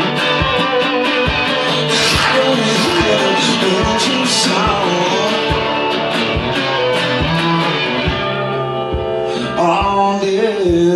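Live resonator guitar played hard and steadily, driven by a beat of sharp accents about twice a second, with a voice singing briefly near the end.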